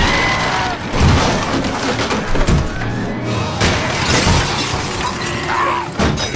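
Film sound effects of a wall being smashed apart, with repeated crashing and shattering debris, over loud dramatic music.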